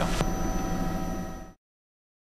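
Bell 206B helicopter cockpit noise: a steady hiss of turbine and rotor with a few held whining tones, fading out about a second and a half in to dead silence.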